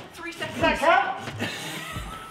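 Wordless voice sounds and laughter from the climbers, with a bending, wavering voice about half a second in.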